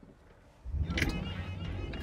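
Mercedes-AMG G63's twin-turbo V8 pulling under light throttle in Sport mode, heard from inside the cabin. It comes in about half a second in as a low, steady rumble after near silence.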